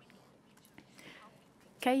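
A pause with faint room noise and a soft breathy sound about a second in, then a voice starts speaking just before the end.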